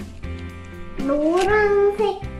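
Light background music with plucked guitar notes; about halfway through, a single drawn-out, high-pitched voice-like call that rises and then holds, louder than the music.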